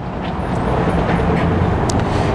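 Steady low rumble of outdoor motor traffic, slowly growing a little louder.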